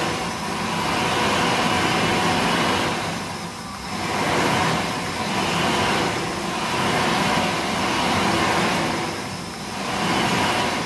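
World Dryer XRAM5 sensor-activated hand dryer running loudly, its blower rush dipping and recovering several times, dips that go with what are called finicky sensors.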